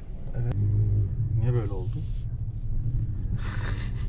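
Opel Astra's engine running steadily at low revs, heard as a low hum from inside the cabin. There is a short click about half a second in and a brief burst of hiss near the end.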